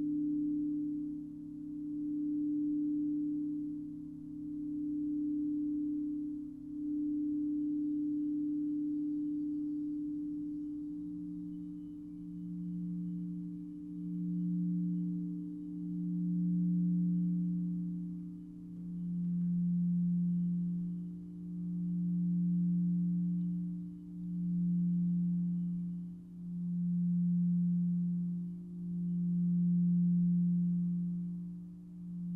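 Frosted quartz crystal singing bowls being rimmed with a mallet, giving sustained pure tones. A higher tone sounds first, then a deeper bowl's tone builds from about ten seconds in, both swelling and ebbing in a slow, even pulse every couple of seconds.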